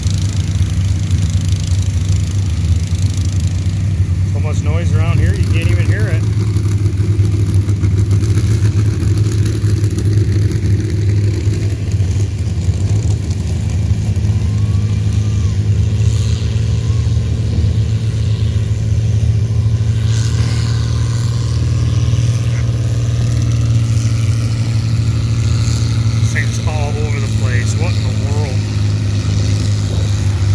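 Farmall 560 tractor's six-cylinder engine running steadily under heavy load as it pulls a weight-transfer sled down the track.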